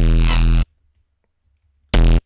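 Software synth bass patch (Serum's "Smoky Bass") sounding single notes as they are entered in the piano roll. One loud, buzzy held note cuts off sharply about two-thirds of a second in, then near silence until a second short note starts at the very end.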